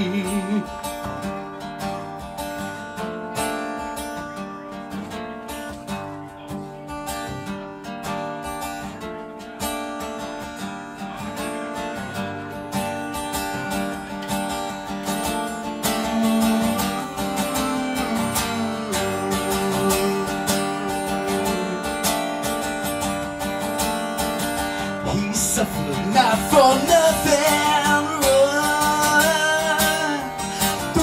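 Steel-string acoustic guitar playing an instrumental passage of a song, with held chords ringing. A singing voice comes back in near the end.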